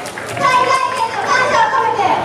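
Loud, high-pitched voices of a yosakoi dance team calling out, starting about half a second in.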